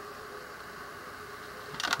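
Steady background hum with a faint held tone, no distinct events.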